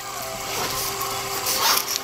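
Shop ambience at a till: a steady hum with handling noise, swelling briefly near the end as a bag is handled at the counter.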